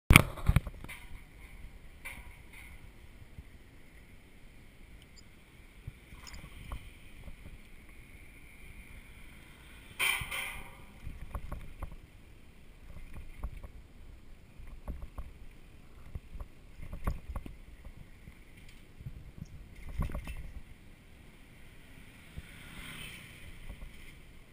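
Ride noise picked up by a camera mounted on a moving bicycle: irregular knocks and rattles as the bike goes over bumps in the road, over a low rumble of tyres and wind. Sharp knocks right at the start and a louder burst about ten seconds in stand out.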